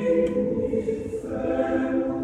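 Mixed choir singing unaccompanied in sustained chords: a held chord ends at the start, the sound thins, and a new chord comes in about a second and a half in.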